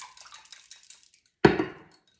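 Fork whisking an egg in a small glass cup, light quick clicks of metal against glass, then about one and a half seconds in a single loud clink with a short ring.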